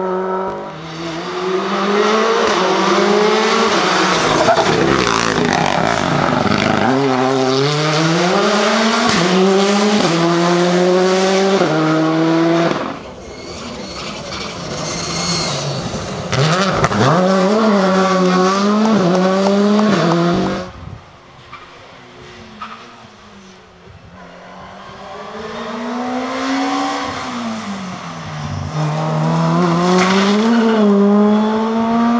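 Rally car engines at full throttle on a stage, revving up and dropping back through the gear changes, in three separate passes, one of them a Škoda Fabia rally car. The last car is faint at first and grows louder as it approaches towards the end.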